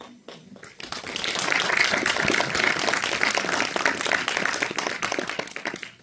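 Audience applauding: many people clapping together, building up about a second in and dying away near the end.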